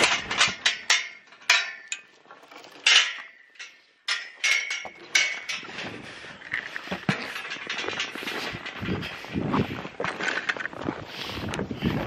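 Irregular rustling, scraping and knocking of a winter jacket's fabric and zipper against the camera microphone as the camera is carried on foot. There is a short lull about three to four seconds in.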